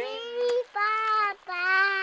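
A young child singing three held, wordless notes at a steady pitch, one after another with short breaks between them.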